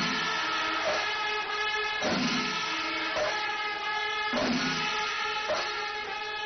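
Many kombu, the C-shaped brass horns of a Kerala temple percussion ensemble, blowing loud held notes together. The notes break off and start again about every second, over the ensemble's drumming.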